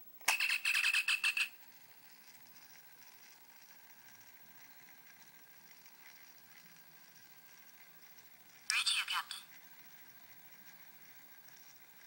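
Star Trek original-series communicator replica chirping as it opens: a rapid warbling trill lasting about a second, then a faint steady electronic hiss, and a second short warbling chirp about nine seconds in.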